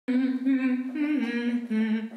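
A woman humming a short tune with her lips closed, a few held notes that step up and then down in pitch.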